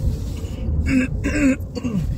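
A woman clears her throat twice, about a second in and again shortly after, over the steady low rumble of a car cabin on the move.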